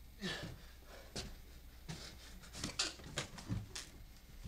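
A man's short, strained, breathy gasps mixed with scuffling knocks, coming in quick, uneven bursts.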